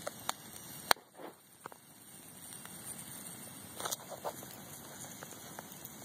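Wood campfire burning with a steady low hiss and scattered sharp crackles and pops, the loudest just under a second in and a small cluster about four seconds in. The firewood is wet from rain.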